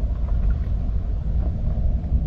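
Steady low rumble of wind buffeting the microphone, with no distinct events.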